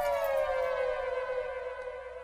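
Siren-like sound effect in a dance-music outro: a wailing tone slides down in pitch, settles into a lower steady wail and fades out.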